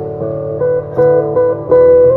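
Live-looped acoustic guitar music with sustained keyboard-like notes, the melody moving in steps and getting louder toward the end.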